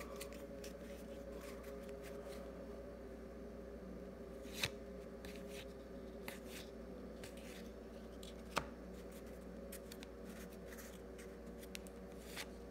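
A stack of 2022 Topps Update baseball cards being handled and slid through the hands, with small paper clicks and rustles. Two sharper clicks stand out, about four and a half and eight and a half seconds in, over a faint steady hum.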